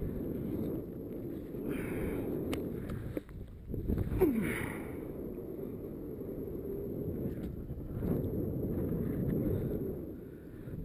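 Wind rushing over the camera microphone during a descent under an open parachute canopy, a steady low rush that swells louder for a moment about four seconds in.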